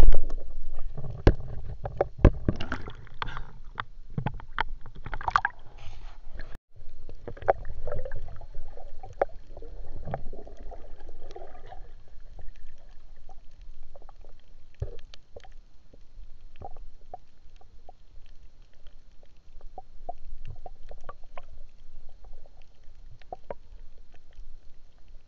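Water sound picked up by a camera in the sea during a spearfishing dive: many sharp clicks and crackles throughout, over low rumbling water movement that is loudest in the first few seconds and again around the middle.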